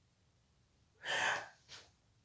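A man's sharp, gasping breath about a second in, followed by a brief second breath.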